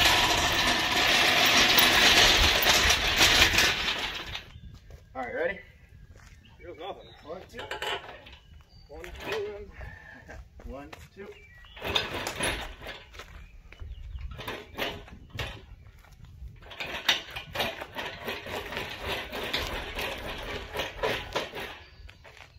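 Steel casters of a shop engine crane rolling and rattling over an asphalt driveway, loudest for the first four seconds and again in a longer stretch near the end as it is pushed along with a rolling truck chassis.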